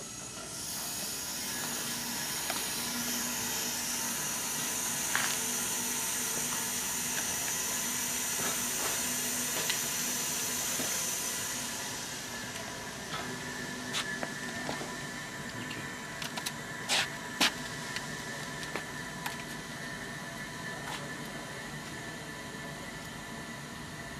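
Compressed air hissing steadily from the high-pressure tank valves of an air-car refilling station for about twelve seconds, then falling away to a quieter steady background with a few sharp clicks.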